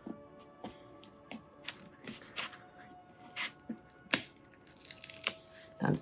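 Faint, irregular clicks and light scratches of a hooked weeding tool picking excess pieces out of cut white vinyl.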